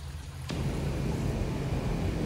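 Steady outdoor background noise: a low rumble that turns into a fuller, even hiss about half a second in.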